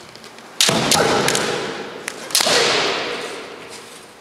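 Two long kiai shouts from kendo fencers facing off with bamboo shinai, one about half a second in and a second starting near the middle. Each starts abruptly and fades over a second or so, echoing in the hall.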